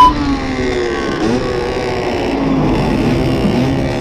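A Fantic 50 Performance motard's two-stroke 50cc engine, fitted with a full Giannelli exhaust, running on the move. Its pitch rises and falls as the throttle is worked.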